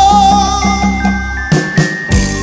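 Live cumbia band playing: a long held note with vibrato ends about a third of the way in over a steady bass line, then the bass drops out for a short break of sharp drum hits near the end.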